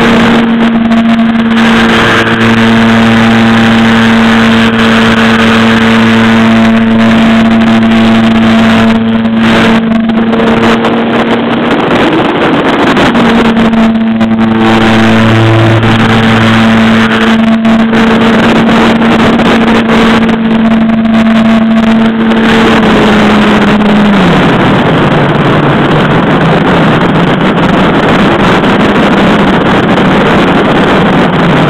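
Electric motor and propeller of a ParkZone radio-controlled biplane in flight, heard close up from its landing gear with wind noise over the microphone. The motor holds a steady whine, dips briefly about 12 seconds in, then drops to a lower pitch about 24 seconds in as it is throttled back.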